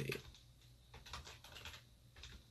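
Faint typing on a computer keyboard: a few scattered keystrokes, irregularly spaced.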